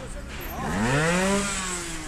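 A trial motorcycle's engine revs: its pitch climbs over about half a second, holds, then falls away.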